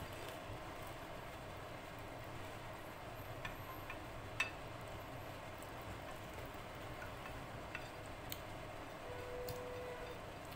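Faint, sparse clicks of fingers mixing rice and kadhi on a ceramic plate, over a steady low hiss. A faint steady tone comes in near the end.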